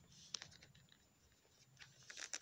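Near silence, with one faint sharp click about a third of a second in and a few fainter ticks as a small plastic hat is handled and pressed onto an action figure's head.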